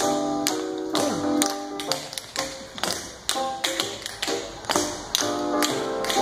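Tap shoes striking a concrete floor in quick, uneven bursts of taps as a group of dancers performs a routine, over recorded music with sustained notes.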